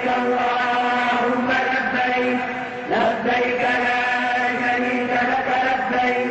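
A man's voice chanting in long held notes, with a brief break about halfway through.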